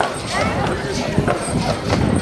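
Hooves of Belgian draft horses clip-clopping irregularly on the asphalt road, mixed with the talking voices of onlookers.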